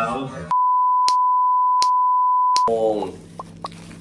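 An edited-in censor bleep: a steady single-pitch beep lasting about two seconds, starting half a second in, with all other sound cut out beneath it. A man is talking just before it and exclaims right after it.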